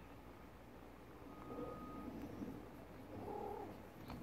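A tabby mother cat faintly purring while she nurses her kitten.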